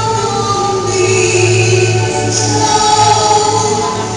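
A woman singing a hymn into a microphone, holding long notes, with violin and keyboard accompaniment.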